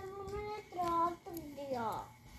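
A young child singing a few held, wordless notes, the last one sliding down in pitch near the end.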